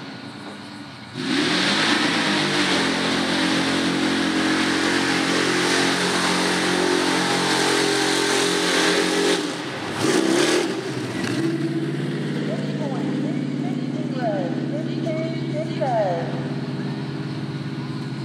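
A mud-bog pickup truck's engine held at high revs as the truck drives through the pit, its pitch climbing slowly over several seconds. It drops away briefly near the middle, then runs steadily again at high revs.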